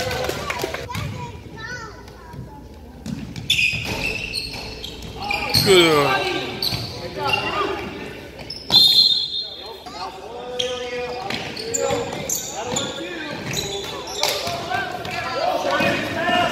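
A basketball bouncing on a hardwood gym floor during play, over players' and spectators' shouting voices. A short high-pitched sound stands out about nine seconds in.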